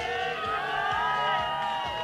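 Spectators cheering and whooping, several voices calling out at once with some long held cries.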